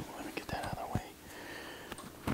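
Cloth rustling and small clicks from a clip-on lapel microphone being handled and rubbed against jacket fabric.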